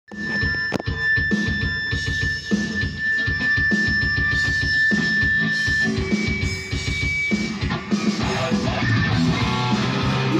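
Rock music with an electric guitar playing over a steady drum beat.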